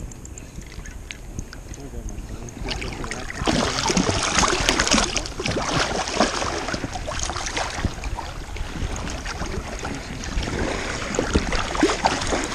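A hooked walleye thrashing and splashing at the water's surface as it is reeled in close, the splashing starting about three seconds in and continuing in irregular bursts.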